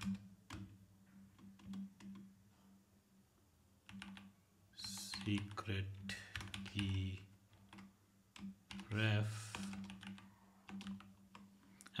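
Typing on a computer keyboard: scattered individual key clicks with short pauses between runs of keystrokes.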